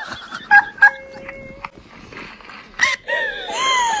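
A girl's high-pitched voice squealing in rising-and-falling glides through the last second or so, after a few sharp knocks and a short steady tone in the first half.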